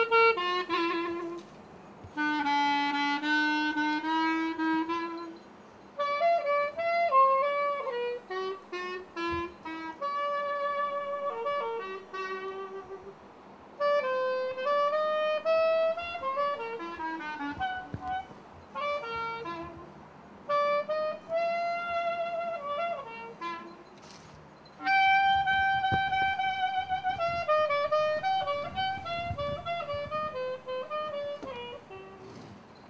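A reed woodwind instrument playing a solo melody in phrases of a few seconds with short pauses between them, on a newly fitted reed.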